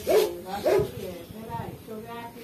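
A dog barking several times in short calls, angry at other dogs that have come near.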